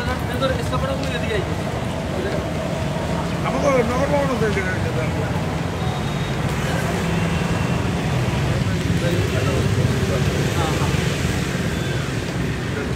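Steady low rumble of road traffic and vehicle engines, with indistinct voices talking over it.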